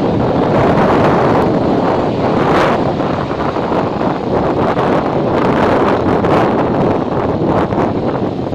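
Loud wind buffeting the microphone of a phone held out from a moving motorbike, a gusty rushing that rises and falls, caused by riding speed.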